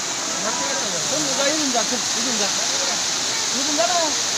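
Waterfall water rushing steadily over rocks, a constant hiss, with people's voices calling out over it.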